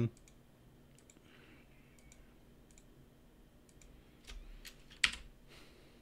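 Computer mouse and keyboard clicks, scattered and faint, with one louder click about five seconds in.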